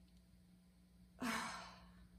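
A woman's deep breath let out as an audible sigh, starting suddenly about a second in and fading away, demonstrating the way people usually breathe deeply.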